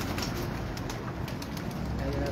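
Domestic pigeons cooing in a wire-mesh loft, with a few faint clicks.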